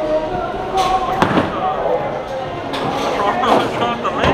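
A single sharp crash about a second in, among the clatter of a bowling alley, with voices around it.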